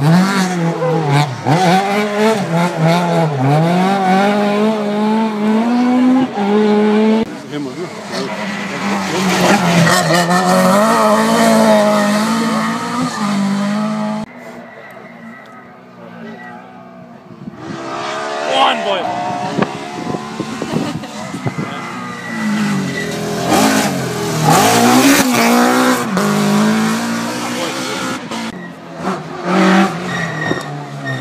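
Rally car engines revving hard, pitch rising and falling with each gear change and lift: one car runs through the first half and dies away about halfway, then a second car's engine builds and revs again a few seconds later.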